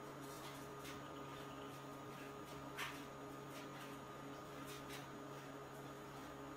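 Quiet room tone with a steady electrical hum and a few faint soft clicks, one a little sharper about three seconds in.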